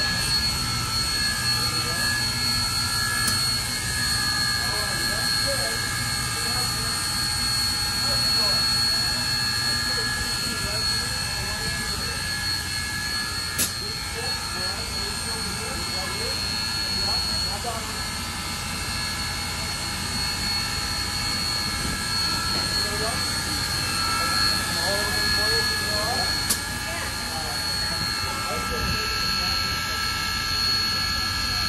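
Union Pacific Big Boy No. 4014, a 4-8-8-4 steam locomotive, standing under steam: a steady roaring hiss with several high, steady whining tones over it.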